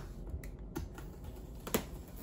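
Scattered light clicks and taps as an X-Acto hobby knife and fingers work at the packing tape on a cardboard box, the sharpest click near the end.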